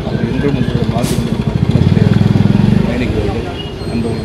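A motor vehicle engine running close by with a fast, even low pulse. It swells louder for about a second midway, then eases back, under a man's speech.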